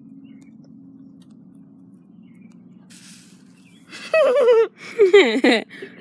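A faint steady low hum, then loud laughter from about four seconds in.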